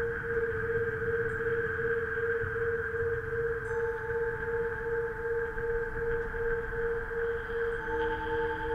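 Synthesized sci-fi space drone: a held tone that throbs several times a second over a rumbling, wind-like hiss, with a higher tone joining a little before halfway.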